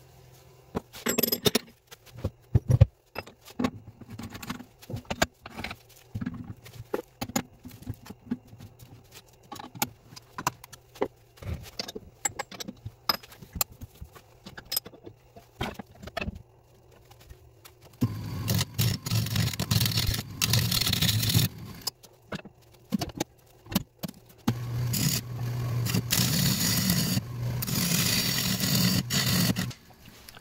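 Scattered sharp clicks and knocks for about the first half. Then a wood lathe spins a bark-rimmed shoestring acacia blank while a turning tool cuts it, in two long stretches of dense cutting noise over a steady low hum.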